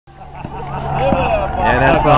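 People talking over a steady low rumble, the voices getting louder about halfway through.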